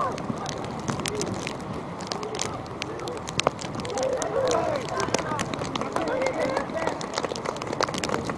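Distant shouts and calls of players on the pitch, clearer in the second half, over a steady outdoor background with scattered sharp ticks and one louder knock about three and a half seconds in.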